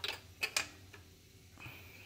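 Light metallic clicks of a spark plug socket and extension being turned by hand in the spark plug tube, four or so in the first second and a faint one near the end.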